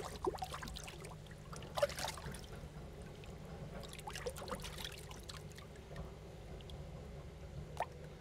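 Water in a shallow bowl trickling and lapping as a koi is handled in it by hand, with a few soft, brief splashes.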